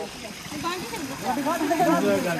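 Faint chatter of several people's voices in the background, over a steady hiss of running water.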